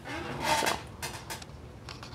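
A few short, light clicks and taps of small things being handled on a work desk, loudest about half a second in.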